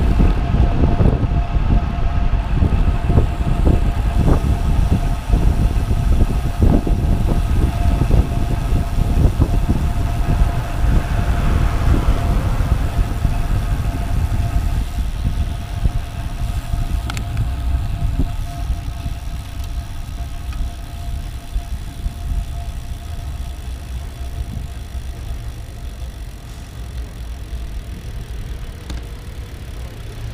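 Wind rushing over a bicycle-mounted action camera's microphone, with road rumble from the tyres. It is loud at riding speed and eases off steadily as the bike slows almost to a stop.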